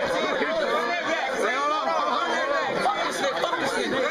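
A group of young men talking and shouting over one another: loud, overlapping crowd chatter.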